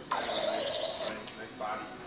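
Bar soda gun spraying soda water into a glass of ice: a hissing spray for about a second that cuts off suddenly.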